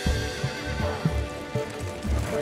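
Horses' hooves clopping on a dirt road as riders and a carriage pass, an uneven run of soft low thuds, under sustained film-score music.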